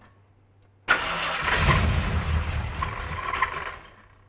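A 1970s Ford Torino's engine being started: the starter turns it over about a second in and it catches and runs. Its sound dies away again near the end.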